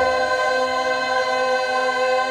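A group of women singing a cappella in barbershop close harmony, holding one sustained chord.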